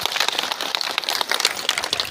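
Audience applause: many people clapping rapidly and irregularly.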